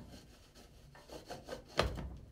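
The top of a flexible-wall permeameter cell being fitted onto its clear cylinder by hand: faint rubbing and scraping as it is seated, then a single sharp knock near the end.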